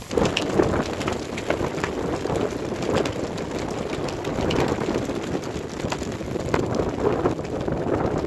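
Gusty wind buffeting the microphone, with icy sleet or hail pattering in many small ticks throughout.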